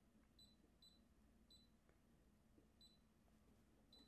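Brother SE1900 embroidery machine's control panel giving faint, short high beeps, five in all at uneven spacing. Each beep is the panel's confirmation of a press on its page-arrow button as the settings screens are paged through.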